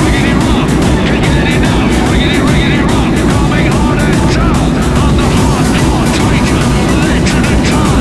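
Steady rumble of an airliner cabin in flight, engine and airflow noise, with indistinct passenger chatter over it.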